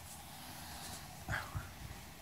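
A small dog gives one short whimper about a second and a half in, followed by a soft knock, over an otherwise quiet room.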